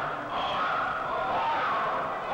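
Several men's voices calling out at once and overlapping, no clear words.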